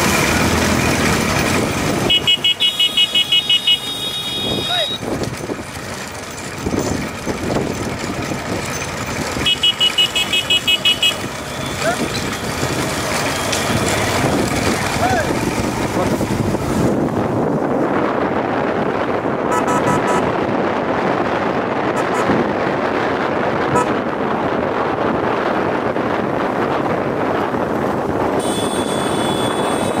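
A pack of motorcycles running in close behind a bullock cart at speed. A horn sounds in rapid on-off pulses about two seconds in and again about ten seconds in, with voices calling out over the engines.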